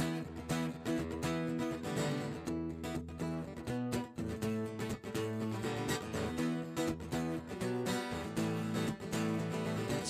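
Acoustic-electric guitar strummed in a steady rhythm, an instrumental passage with the chords changing a few times and no singing.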